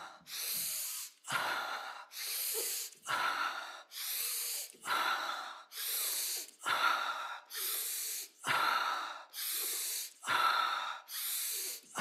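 A man breathing hard and fast in a steady rhythm, in through the nose and out through the mouth, about one full breath every two seconds, as in a breathwork exercise.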